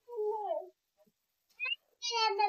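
A cat meowing: one drawn-out meow that falls in pitch, then a short one near the end.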